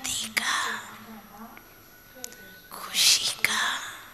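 Soft, breathy, near-whispered speech in two short stretches, one at the start and one about three seconds in.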